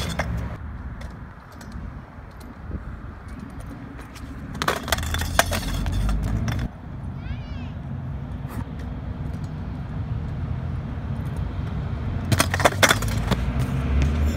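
Kick scooter's wheels rolling over concrete, with two spells of clattering impacts, about five seconds in and again near the end, as the scooter hits the ground in tricks and a fall.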